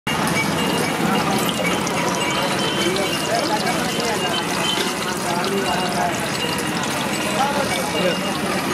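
A hand mixing thick gram-flour batter in a metal pot, with wet sloshing, over indistinct voices and a steady hiss at a busy street-food stall.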